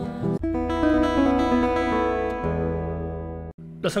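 Nylon-string classical (criolla) guitar: a chord is strummed about half a second in and left ringing, slowly fading, with a low bass note added about halfway through. The ringing cuts off suddenly near the end.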